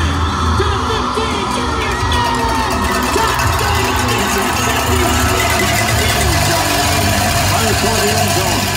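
Crowd babble from many people talking at once in stadium stands, with music playing over the loudspeakers beneath it.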